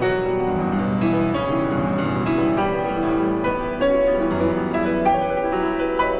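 Classical piano music: a steady run of struck piano notes sounding over held chords.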